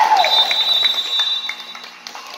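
Referee's whistle blown in one long steady blast of about a second and a half, calling a stoppage in play, over voices and court noise.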